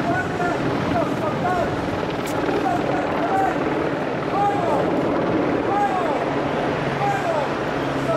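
Crowd of people chattering over a steady mechanical drone.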